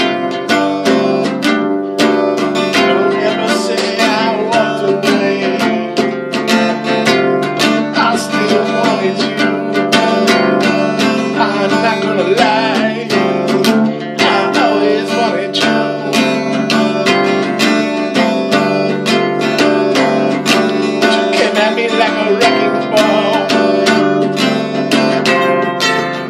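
Acoustic guitar strummed in a steady rhythm, chords ringing without a break.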